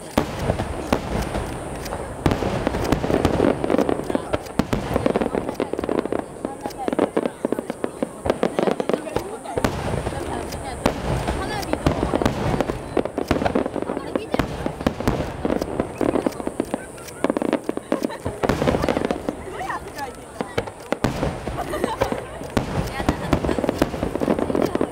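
Aerial firework shells bursting one after another in a dense barrage, sharp bangs following each other with no pause throughout.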